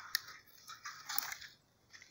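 Faint crunching and rustling of dry algaroba (mesquite) twigs and leaves, with a few light crackles about a second in.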